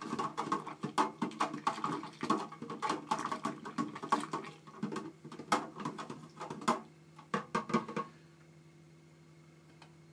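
Rapid, irregular clicking and rattling of small objects being handled, which stops about eight seconds in and leaves a faint steady hum.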